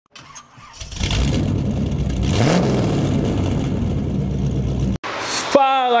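Car engine starting about a second in and running, with one brief rise in revs, then cut off abruptly about five seconds in.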